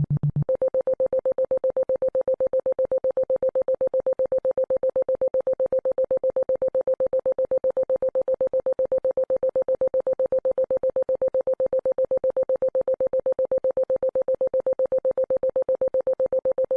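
Synthesized healing-frequency tone: a single pure, steady pitch that pulses rapidly and evenly, several times a second. About half a second in it switches from a low hum to a higher, mid-pitched tone, which then holds unchanged.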